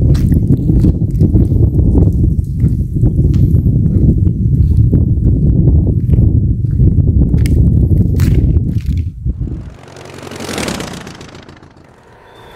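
Wind rumbling on a handheld camera's microphone, with footsteps and small knocks as the camera is carried along a roadside. About ten seconds in the rumble stops abruptly and a whoosh effect swells and fades.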